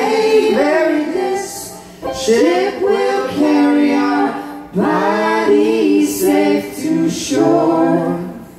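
Live vocal trio, a man and two women, singing sustained phrases in harmony, with brief breaks about two seconds and nearly five seconds in.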